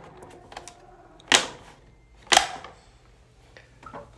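Two sharp clicks about a second apart, with a few fainter ticks, as the snap-on fabric grille of a Bose 301 speaker is pulled off its pegs.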